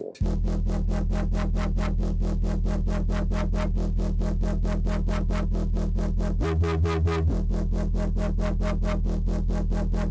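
Electronic bass music playing back: a distorted synthesizer bass holding a low note under a fast, even pulse, jumping briefly to a higher note about six and a half seconds in. The bass's highs are lifted by an EQ placed on the quiet band of Bitwig's Loud Split.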